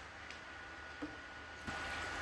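Faint water-handling noise as hands hold a homemade aluminium-tube radiator submerged in a pan of water, with a couple of light clicks and a faint steady high tone behind.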